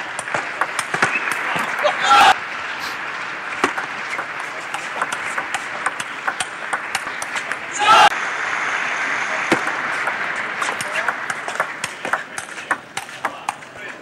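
Table tennis ball clicking off the paddles and table through rallies, over a steady crowd murmur. Short loud shouts ring out about two seconds in and again about eight seconds in.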